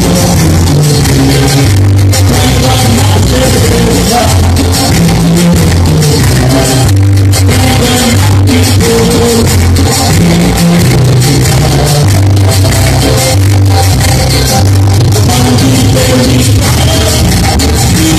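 Live cumbia band playing loudly through a PA: drums, bass, guitar and keyboards with a bass line stepping in a steady dance rhythm.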